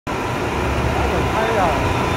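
Hip-hop club track played over loudspeakers, opening with a steady deep bass and a spoken vocal intro.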